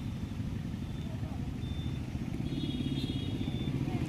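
Road traffic at a busy junction: vehicle engines running as cars and vans pass, a steady low rumble that grows a little louder toward the end.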